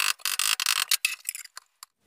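Claw hammer tapping the thin sheet-steel cone of a two-stroke expansion chamber held over a steel bar in a vise, shaping the metal for fit-up before welding. A short scrape at the start gives way to a quick run of light taps, then a few scattered taps.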